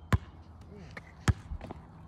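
A basketball bouncing on a hard outdoor court: two sharp bounces about a second apart, with a few fainter taps between.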